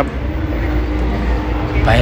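Steady low rumble and hiss of an open shuttle cart ride, with a faint steady hum underneath; a man's voice starts again near the end.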